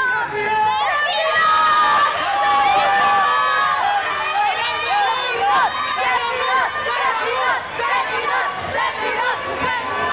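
A crowd cheering and shouting, many high voices overlapping at once.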